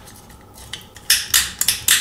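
Plastic hair dryer housing parts being handled and fitted together during reassembly: a quick run of sharp clicks and rattles in the second half.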